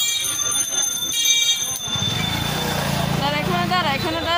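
Busy street sound: a high, steady ringing tone for the first two seconds, broken once near one second, then a low motor drone, and a voice starting near the end.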